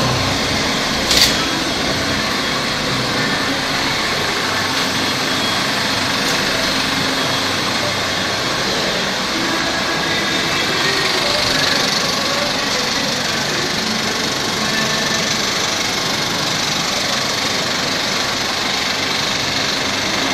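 Steady mechanical whirr of a running theatre reel projector and the booth's machinery, unchanged throughout, with one sharp click about a second in.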